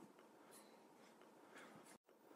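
Near silence in a pause of a recorded talk: faint hiss with a few soft rustles, and a brief dropout at the very end.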